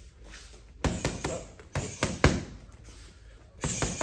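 Boxing gloves smacking against a partner's held-up boxing gloves during a punching combination: a quick run of about six sharp strikes, the loudest about two seconds in, then two more in quick succession near the end.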